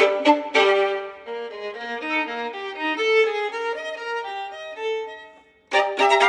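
Solo violin, bowed: a few loud, sharp accented strokes open the passage, then a quieter line of held notes moving in pitch. Near the end it pauses briefly before loud strokes return.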